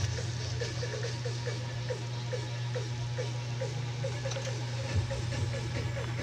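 Sweet soy braising liquid boiling in a wok around a pork hock, with many small irregular bubbling plops several times a second over a steady low hum.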